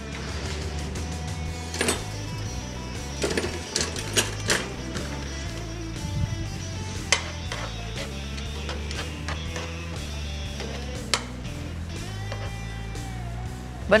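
Background music with a steady low bass line, over which tongs click and tap a few times against a nonstick roasting pan as zucchini strips are turned and laid in it.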